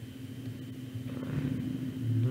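Steady low electrical hum with faint background noise, a little louder in the second half.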